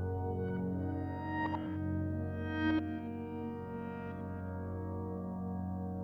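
Pure Upright sampled-piano app set to an experimental sound blended between its pad and reverse settings, played four-handed. It sustains ambient chords, with fresh notes struck about one and a half and nearly three seconds in.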